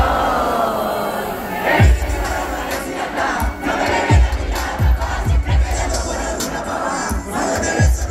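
Concert crowd shouting and cheering loudly, singing along in places, over a live hip-hop beat. About two seconds in, deep booming bass-drum hits start, each sliding down in pitch, coming every half second to a second.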